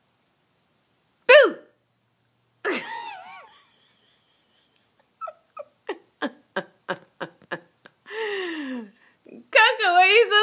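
A person's wordless vocal noises and giggling: a sharp, high falling squeal about a second in, a wavering drawn-out sound, then a run of short, quick laughs and a long falling groan, with louder laughter near the end.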